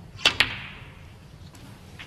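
Snooker cue tip striking the cue ball, then the cue ball striking a red: two sharp clicks a split second apart, the shot that pots the red.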